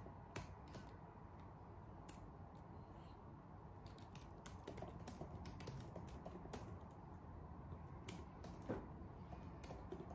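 Faint, irregular clicking of laptop keys as two people type on MacBook keyboards, with one slightly louder keystroke near the end.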